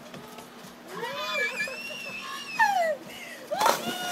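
A high-pitched squealing cry with rising and falling pitch, then a sudden splash of a body falling into a swimming pool near the end.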